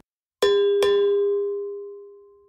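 A bell-like chime struck twice, about half a second apart. Its single tone rings out and slowly fades.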